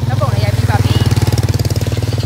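Small motorcycle engine idling close by, a steady low drone with rapid even firing pulses.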